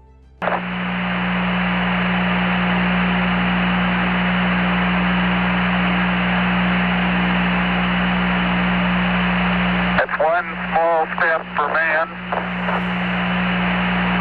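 Apollo 11 lunar-surface radio downlink: a steady static hiss with a constant hum. About ten seconds in, a voice comes through the radio for roughly two seconds, then the hiss and hum return.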